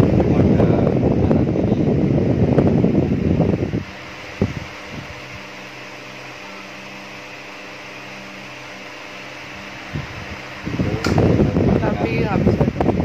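Advance TDS-18 metal-blade electric fan running: for about the first four seconds its air stream rushes loudly against the microphone, then only a much quieter steady motor hum is left, with a faint click or two, until the loud rushing returns near the end.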